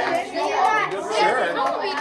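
Several children's voices talking over one another, with a few light clicks in the first second.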